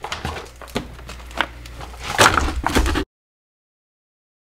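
Vacuum-sealed beef packages being handled and set into a chest freezer: plastic crinkling and packages knocking against each other, loudest about two seconds in. The sound cuts off abruptly after about three seconds.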